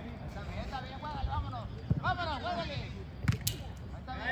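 Men shouting across a soccer pitch, with a few sharp knocks of a soccer ball being kicked; the loudest comes about three seconds in.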